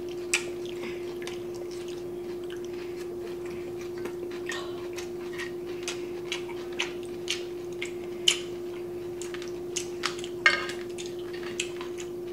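Close-miked eating sounds: chewing and lip smacks mixed with taps of chopsticks and a spoon on dishes, heard as scattered sharp clicks with two louder ones past the middle, over a steady low hum.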